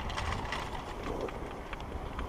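Skis sliding over packed snow while being towed up a platter ski lift, under a steady low rumble, with irregular sharp clicks and rattles from the tow pole and hanger.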